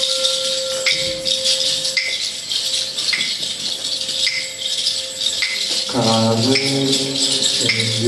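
Live jazz band playing: a constant wash of cymbals and shaken hand percussion, struck about once a second. A steady held note fades out about three seconds in. About six seconds in, a low pitched note slides in and holds.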